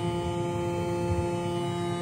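Erica Synths Black System III modular synthesizer, with Black VCO 2 oscillators, sounding a sustained chord of steady held notes.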